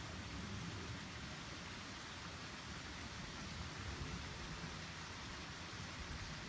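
Faint, steady outdoor background noise: an even hiss with a low, fluttering rumble and no distinct events.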